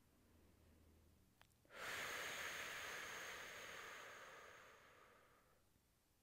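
A person's long breath out, starting abruptly about two seconds in and tapering off over about four seconds.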